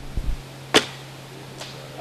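An archer shoots a recurve bow: one sharp snap of the string on release, followed less than a second later by a much fainter knock.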